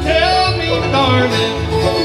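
A live bluegrass band playing: banjo picking over acoustic guitar, with an upright bass keeping a steady beat.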